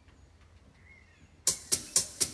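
Quiet outdoor air with a faint short bird chirp about a second in, then, near the end, an electronic organ's built-in drum rhythm starts with a few sharp hits, about four a second, leading into the music.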